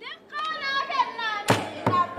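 A girl's high solo voice chanting the opening of a Borana folk song, with sharp rhythmic handclaps joining about halfway through.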